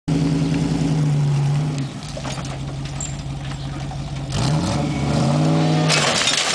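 Land Rover engine revving hard while the vehicle strains to drag a bush-covered caravan on a chain. The revs sag just before two seconds in and climb again around four and a half seconds, holding high to the end.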